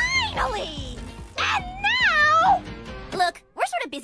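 Two cartoon characters screaming in fright over background music: a falling scream at the start, then a long, high, wavering scream from about one and a half seconds in.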